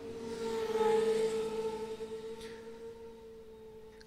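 A racing-car engine sound effect: one steady high engine note that swells over the first second and then slowly fades away.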